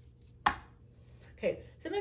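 One sharp tap about half a second in as a tarot card is laid down among the cards on the table. A short voice sound follows near the end, just before speech begins.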